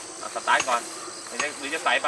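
Insects buzzing steadily at a high pitch in the roadside vegetation, broken by a few short bursts of people's voices.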